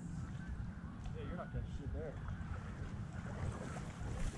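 Low, steady rumble of wind buffeting the microphone, mixed with water moving at the surface close by.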